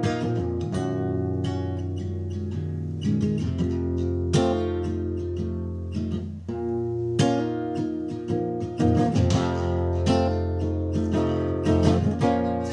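Acoustic guitar played solo: an instrumental blues passage of picked notes and chords, with strongly accented plucks about four seconds and about seven seconds in.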